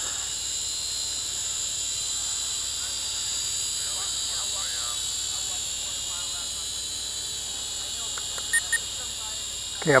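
Syma X5HW quadcopter's small motors and propellers whining steadily as it hovers in altitude hold. About a second and a half before the end come two short high beeps, typical of the transmitter as the rates are bumped up.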